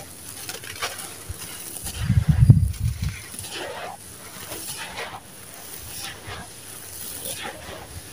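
Dry, gritty sand-cement mix with small stones being crushed by hand and poured through the fingers, the grains trickling and crunching in short scattered bursts. About two seconds in a louder low rumble lasts about a second.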